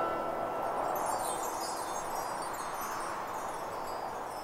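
Chimes in a quiet break of the song: a soft wash of tinkling high notes over a gentle hiss, slowly fading.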